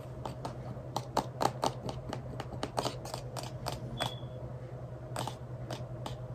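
Irregular light clicks and taps, several a second and clustered in the first half, over a steady low hum from a running computer. A short high tone sounds once about four seconds in.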